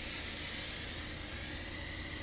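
Clear liquid poured in a steady stream from a plastic bottle into a plastic cup, splashing and hissing.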